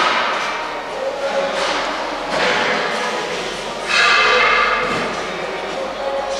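Construction-site noise echoing in a large, empty hall: a sharp knock at the start, then continuous clatter with a louder burst about four seconds in.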